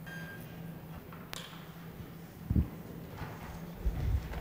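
A single sharp click about a third of the way in, a light switch being flicked as the room is darkened, then a low thump like a footstep, over a steady low hum.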